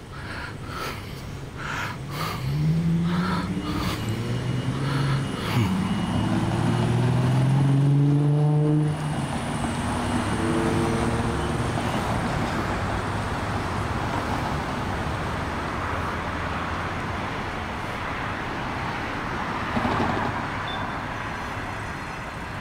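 A car accelerating away, its engine note rising in several steps over about six seconds as it shifts up, then fading into steady street traffic noise.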